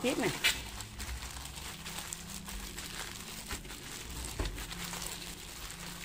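Thin plastic food bag crinkling and rustling steadily as hands squeeze and knead soft taro dough inside it.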